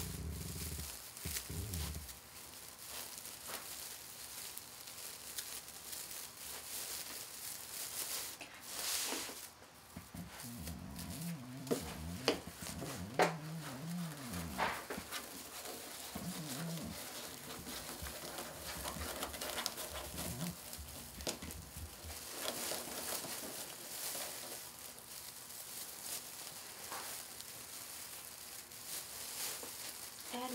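Metallic deco mesh rustling and crinkling with many small crackles as it is bunched and pushed into a wreath's twist ties, with a louder crinkle about nine seconds in.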